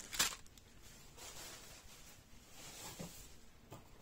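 Fireworks packs being handled on a surface: one sharp knock shortly after the start, then faint rustling with a few small clicks.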